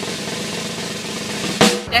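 Snare drum roll used as a suspense sound effect, a fast even rattle that ends in a single sharp hit near the end.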